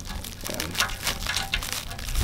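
Irregular crinkling and small scraping clicks as a nut insert is worked by hand into its slot behind the pinch weld, plastic packaging rustling alongside.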